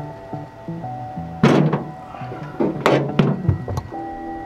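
Plastic trim clips on a steel car trunk lid being pushed in with pliers: four sharp clicks and knocks, the loudest about a second and a half in. Background music plays throughout.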